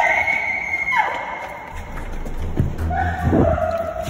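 Electronic laser tag game tones: a rising tone leading into a steady high beep for about a second, a falling glide, then a lower held tone near the end.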